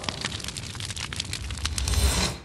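Sound effect of the show's animated intro sting: a dense crackle of many small clicks over a low rumble, growing louder near the end.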